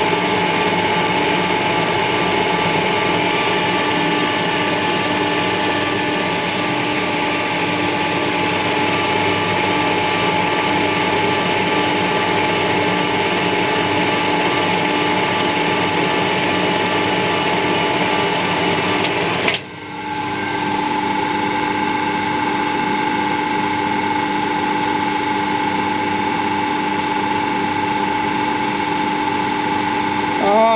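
Metal lathe running steadily with its gear train engaged, a steady hum and whine, while a single-point tool takes a thread-cutting pass on a 7/8-inch UNF thread. The sound drops out briefly about two-thirds of the way through, then picks up again.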